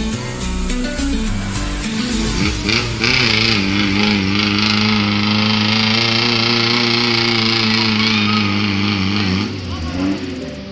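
Off-road vehicle's engine held at high revs for about six seconds, nearly steady in pitch, as it works through a muddy water pit. It is heard over background music.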